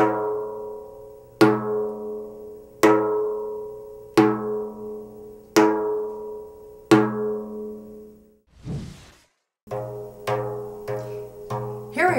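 Treble strokes on a Remo Thinline frame drum's synthetic head: the tip of the fourth finger flicks the edge with the wrist, making single even strokes about one every 1.4 seconds. Each one rings with a clear pitched overtone and fades. After a short hiss and a break about three-quarters of the way in, softer strokes come about twice as fast.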